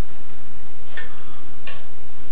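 Quiet room noise with two faint, short taps about two-thirds of a second apart, near the middle and toward the end.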